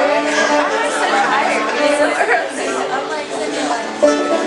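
Chatter of several people talking over one another in a room, with a string band's fiddle and banjo playing faintly underneath.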